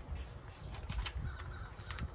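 Outdoor background with a steady low rumble and a faint bird call held for about half a second, a second and a half in, plus a few light clicks.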